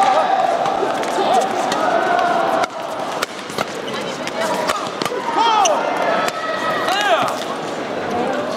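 Badminton rally in an indoor hall: rackets hit the shuttlecock with sharp clicks, and court shoes squeak on the floor in short arcs of pitch, twice in clusters late on, over a background of voices echoing in the hall.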